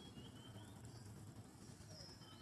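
Near silence: faint outdoor ambience, with a couple of short, faint high chirps in the first half-second.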